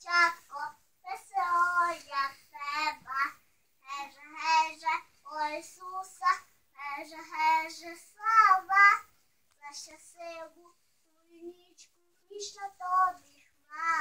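A little girl singing a Christmas carol (koliadka) alone in a high child's voice, in short phrases with breaths between them; she goes quieter for a couple of seconds near the end.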